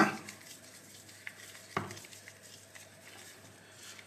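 Small precision screwdriver driving the last screw into an Ontario folding knife's handle: faint clicks and scraping of the bit on the screw, with one sharper click a little under two seconds in.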